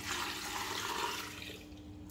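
Water poured from a jug into a stainless steel pressure cooker pot over chunks of meat, splashing and running, trailing off about one and a half seconds in.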